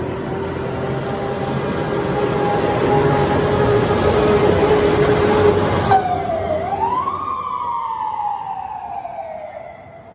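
Fire truck passing close with its siren on, growing louder as it approaches. About six seconds in, as it goes by, the pitch drops suddenly, and the siren is switched off and winds down in a slow falling wail while the truck moves away.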